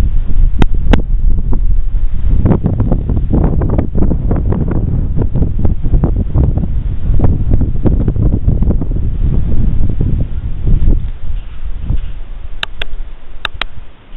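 Wind buffeting the microphone outdoors, a heavy low rumble that eases off after about eleven seconds. A few sharp clicks sound near the start and again near the end.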